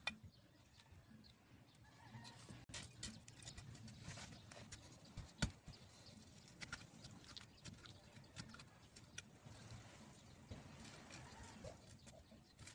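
Metal hand trowel scraping and digging into hard, dry garden soil to make planting holes: faint, scattered scrapes and taps, with one sharper knock about five seconds in.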